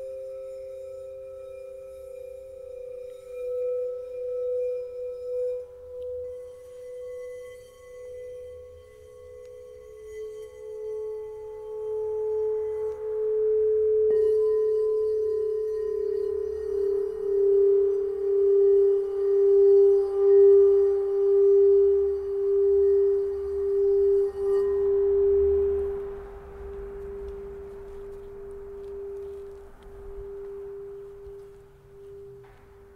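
Singing bowls ringing in long, steady tones with a slow wavering pulse. A fresh strike about halfway through brings in a louder, lower tone that dies away near the end.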